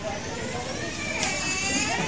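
Quiet background chatter of a gathering, with a faint higher voice speaking from about a second in, over a low steady rumble.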